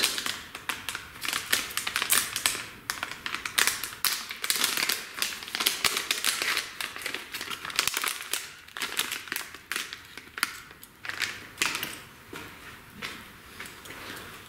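Small clear plastic bag crinkling and crackling in the hands as a wired pushbutton switch is unwrapped from it: a dense run of irregular crackles that thins out near the end.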